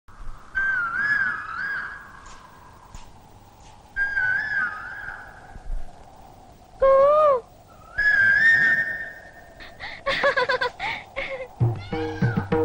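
Opening of a Tamil film song: short warbling, bird-like melodic phrases separated by pauses, a swooping rise-and-fall glide about seven seconds in, then a quick run of staccato notes near the end.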